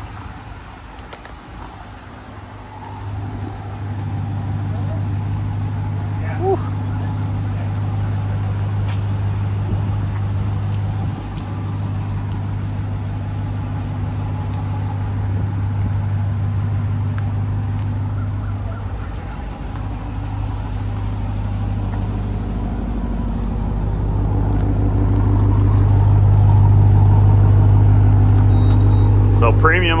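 A vehicle engine idling with a steady low hum. It grows louder about three seconds in and again near the end.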